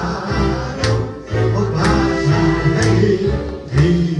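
A man and a woman singing a Hungarian magyar nóta song as a duet into microphones, over electronic keyboard accompaniment with a steady beat about once a second.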